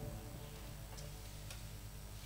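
Quiet low electrical hum from the sound system, with the tail of a keyboard chord fading out at the start and a few faint ticks about half a second to a second apart.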